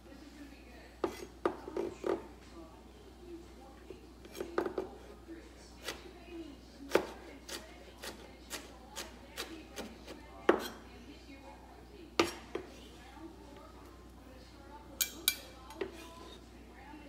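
Kitchen knife chopping peppers on a wooden cutting board: sharp knocks of the blade striking the board, in small clusters at first, then a steady run of about two chops a second in the middle, and a last quick pair near the end.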